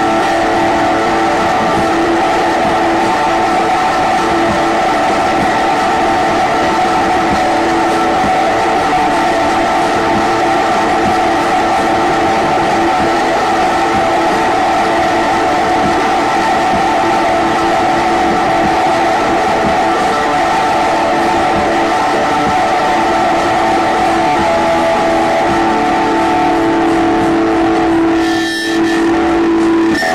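Live kraut/noise-rock music: a loud, distorted electric-guitar drone holding one dense chord steady, with a brief break near the end.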